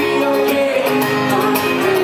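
Live acoustic guitar strummed in a steady rhythm, with a solo male voice singing over it.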